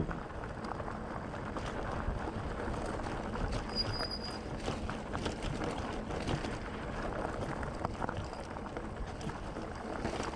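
Loaded touring bicycle rolling over a loose, rocky gravel track: a steady crunch of tyres on stones with many small clicks and rattles from the bike. A brief high thin tone sounds about four seconds in.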